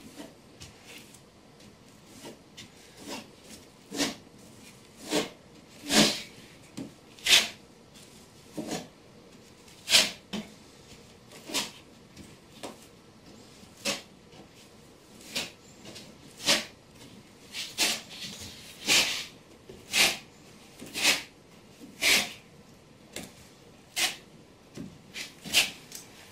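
A flat trowel scrapes in short strokes, about one a second, over Schluter Kerdi waterproofing band laid in mortar. Each stroke presses the band into the corner and squeezes out the mortar underneath to get a good seal.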